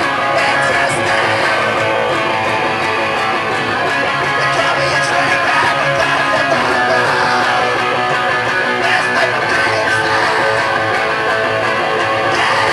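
Screamo band playing live at full volume: strummed electric guitars over drums and cymbals, loud and steady throughout, with no singing heard.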